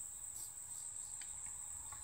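A faint, steady, high-pitched insect trill, typical of crickets, held unbroken on one tone. A couple of faint clicks come about a second in.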